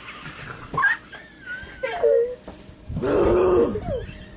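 A woman gagging and retching: a few short strained throat noises, then one longer, louder retch near the end.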